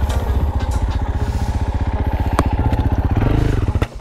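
Dual-sport motorcycle engine running with a rapid, even beat as the bike rides off down a gravel track. It revs up near the end and then cuts off abruptly.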